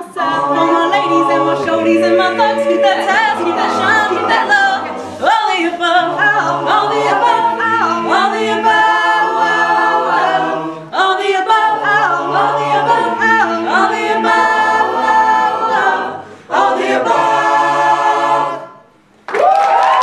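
A cappella group singing a hip-hop arrangement: mixed voices hold layered chords under a solo voice, with a beatboxer's vocal percussion clicking through it. The singing stops about a second before the end, and a loud burst of audience cheering follows.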